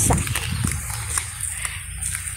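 Footsteps of people walking on a paved sidewalk, a few faint steps over a steady low rumble of wind and street noise on the microphone.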